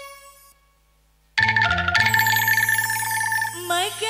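Qasidah band on electronic keyboard: a held chord dies away into about a second of near silence, then a loud keyboard passage over a steady bass starts about a second and a half in. A woman's singing voice comes in near the end.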